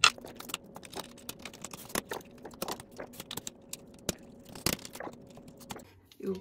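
Hands assembling a small household item: a run of irregular clicks, knocks and crinkles as the parts are handled and fitted together. The sharpest clicks come right at the start, at about two seconds and a little before five seconds.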